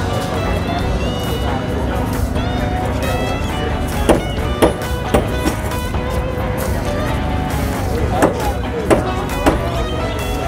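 Background music with steady held notes, punctuated by a few sharp knocks, three close together around the middle and three more near the end, with voices underneath.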